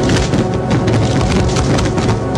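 Music with fireworks crackling and popping over it in rapid, irregular snaps.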